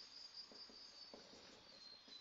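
Near silence, with faint high squeaking and light strokes of a marker pen writing on a whiteboard.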